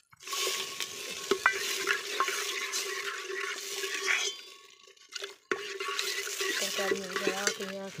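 Hot oil sizzling in an aluminium pot over a wood fire as oil is poured in and stirred with a metal ladle. The sizzle starts just after the start, drops out for about a second after the four-second mark, and comes back.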